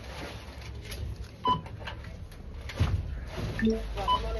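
Supermarket checkout sounds: a few short electronic beeps of different pitches from the tills' barcode scanners, with scattered knocks and clatter over the steady hum of the store.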